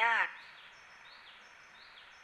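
A woman's voice speaking Thai ends a word at the very start, then a pause with faint steady background hiss and a few faint high chirps.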